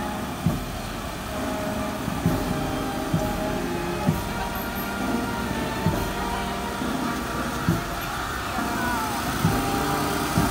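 Procession music: held melody notes over a slow drum beat, one low thud every one to two seconds, with a steady hum of street and crowd noise underneath.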